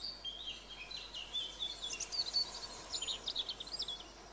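Small songbirds chirping and twittering in a quiet countryside ambience: many short, high notes in quick runs.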